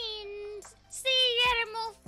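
A high-pitched female voice sings held, level notes over a low backing track. A kick-drum thump comes about one and a half seconds in.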